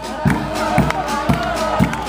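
A banda, a festive street band, playing a tune, with low bass notes pulsing about twice a second.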